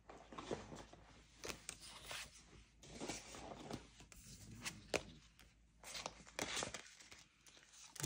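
Paper placeholder cards being slid and gathered off a spiral-bound page, with soft paper rustles and light taps on and off.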